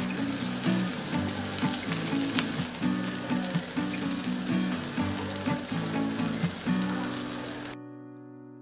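Fine crackling and sizzling from a frying pan where an apple cake cooks over very low heat on butter and sugar caramelized with apple slices, under background music with a low melodic line. Both fade gradually and cut off just before the end.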